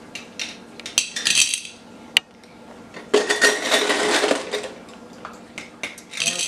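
Peanut M&M's rattling and clinking as they are scooped with a quarter-cup measure and poured into a glass jar of peanuts. There is a short pour about a second in, a sharp click near two seconds, and a longer clattering pour from about three to four and a half seconds.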